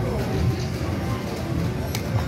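Casino slot-machine music and jingles over a murmur of voices, with a sharp click near the end.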